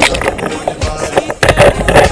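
A song plays under loud, irregular splashing and rushing water noise from a camera moving through the water near the surface.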